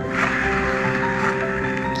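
Background music, with the whirring hiss of a plastic lazy-susan turntable spun by hand. It starts just after the music and dies away near the end.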